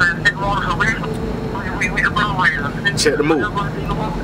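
A man's voice talking in short bursts, heard through a phone's speaker held up to the microphone, over a steady low hum.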